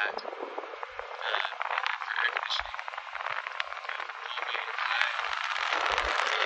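RV ceiling air-conditioner/heater unit's blower running, a steady rush of air that grows louder over the last second or so, with a few light clicks.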